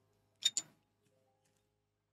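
Two quick sharp clicks about half a second in, a cigar torch lighter being sparked.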